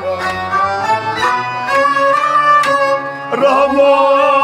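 Kashmiri Sufi music: a string instrument plays a melody over a few goblet-drum strokes, and male voices come in singing about three seconds in.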